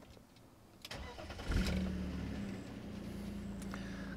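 BMW E39 528i's straight-six engine turned over by the starter about a second in. It catches quickly and settles into a steady idle.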